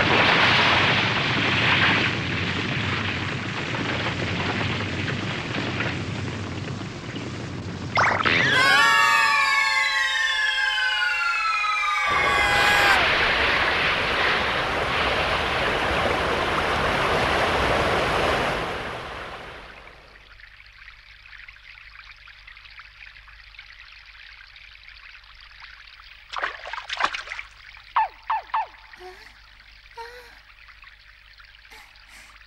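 Cartoon sound effects of a blazing fire in a rainstorm: a loud, steady rushing noise, broken about eight seconds in by a sudden crash followed by several falling whistling tones. It fades out after about twenty seconds to a soft hiss, with a few short sharp sounds near the end.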